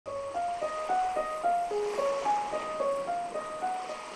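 Background music: a light melody of short single notes, about three to four a second.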